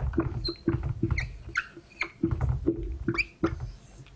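Whiteboard marker squeaking across the board in a string of short strokes as a word is written, with dull bumps of the board under the pen.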